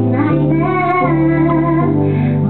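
A woman singing a slow song into a microphone while accompanying herself on piano, sustained bass notes changing about once a second under her melody.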